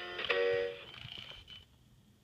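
Gemmy Mr. Snow Business animated snowman's built-in speaker playing the last notes of its song. The music ends a little under a second in, and a faint thin tone hangs on briefly before it goes quiet.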